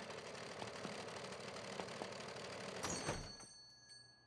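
Cartoon sewing machine running, stitching in a rapid, even rattle for about three seconds. It ends in a short whoosh and a faint, high ringing tone.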